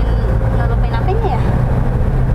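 Steady low rumble of a car's engine and road noise heard inside the cabin while driving, with a quiet voice asking a short question in the middle.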